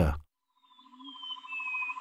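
Faint forest ambience fading in after a brief silence: a steady rapid trill with a bird's slow descending whistle over it about a second in.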